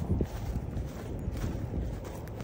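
Sneakered footsteps walking on dry grass: soft, irregular thuds over a low rumble.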